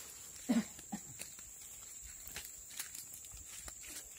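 Footsteps in sandals on dry leaf litter and fallen palm fronds, with scattered crisp crunches. A short, low, pitched vocal sound comes about half a second in, and a shorter one just after, over a steady high-pitched whine.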